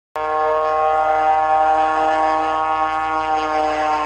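A long held musical chord opening the background music, steady in pitch with many overtones, starting abruptly just after a moment of silence and slowly fading.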